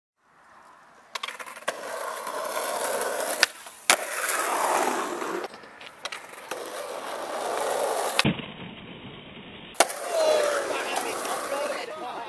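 Skateboard wheels rolling on asphalt, broken by several sharp clacks of the board's tail popping and the deck landing, as the skater pushes up to ollie over a row of decks and people.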